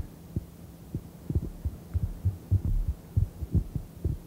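Steady electrical hum on an old tape recording, with a scatter of soft, irregular low thumps.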